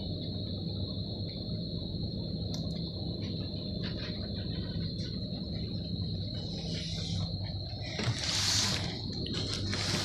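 Steady low background hum with a constant thin high-pitched whine over it, with a brief rustle about eight seconds in.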